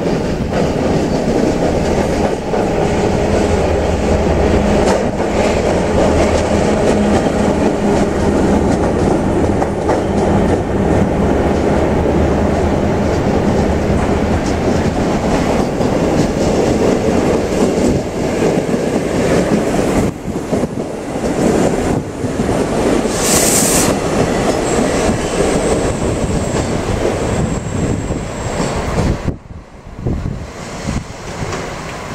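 Diesel railbus rolling past close by with its engine running, a steady loud rumble. A short sharp hiss comes about two-thirds of the way through, then a thin high squeal for a few seconds near the end.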